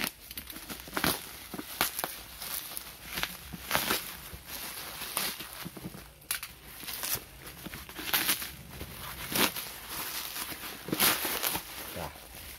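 Plastic bubble wrap being cut open and pulled off a cardboard box: irregular crinkling and crackling rustles, one after another.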